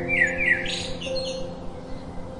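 House sparrow chirping: a quick run of short falling chirps, then a few higher notes that stop about a second in. Soft sustained background music plays throughout.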